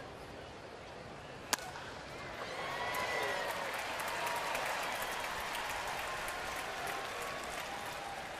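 Wooden baseball bat striking a pitched ball with one sharp crack about a second and a half in, then the ballpark crowd cheering and applauding, building about a second later and holding.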